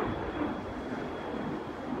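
Steady low rumble of outdoor background noise, with a faint thin high whine running through it that fades near the end.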